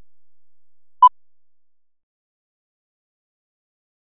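A countdown leader's sync beep: one short, steady electronic beep about a second in.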